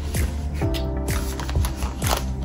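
Background music with a steady beat, about two kick-drum hits a second over held chords, with the crinkle of a plastic packaging sleeve being handled.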